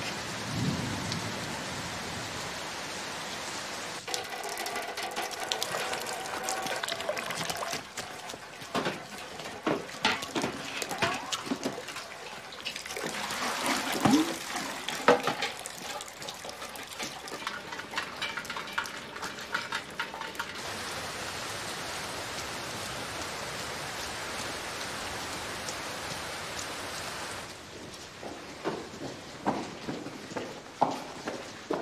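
Steady heavy rain, with scattered sharp drips and knocks through the middle of the stretch; the rain eases a little near the end.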